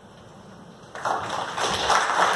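Audience applauding, starting suddenly about a second in after a short quiet pause.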